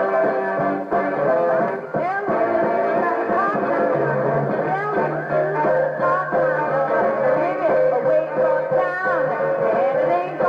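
Mid-1960s rhythm-and-blues band music with guitar, and a woman singing over it.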